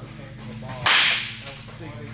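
Baseball bat striking a pitched ball once, about a second in: a sharp crack that rings on for about half a second in the cage.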